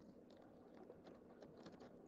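Near silence, with faint scattered clicks and rustles of things being moved about in an overhead storage compartment.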